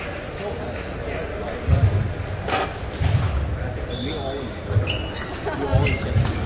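Table tennis play in a large, echoing hall: a sharp click of the ball, short high squeaks and four dull thuds, over a steady background of chatter from other tables.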